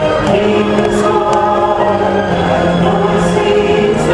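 Christmas parade music with a choir singing long held notes.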